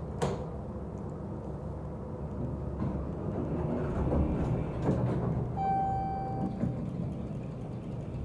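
Montgomery hydraulic elevator car travelling down with a steady low rumble, after a click just as the floor-1 button is pressed. About six seconds in, a single steady chime sounds for about a second.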